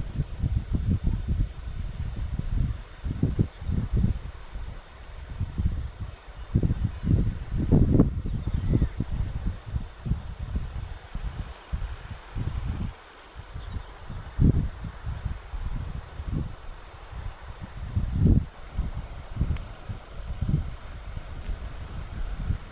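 Wind buffeting the microphone in irregular gusts, with a faint steady hiss behind.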